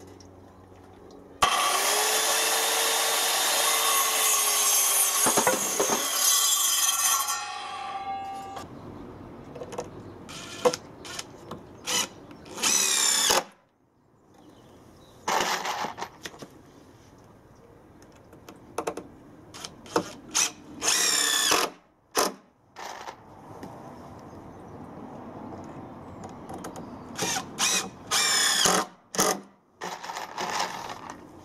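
An Evolution circular saw cuts through a length of timber for about five seconds, then winds down. A cordless DeWalt drill-driver then drives screws into timber in several short bursts, each rising in pitch as the motor speeds up.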